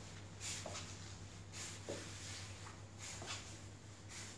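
Soft footsteps, about one a second, with the rustle of the camera being handled, over a steady low hum.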